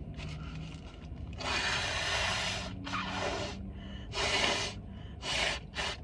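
A person blowing their nose into a paper napkin: one long blow about a second and a half in, followed by several shorter blows.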